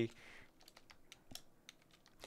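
Faint typing on a computer keyboard: a quick, uneven run of separate keystroke clicks.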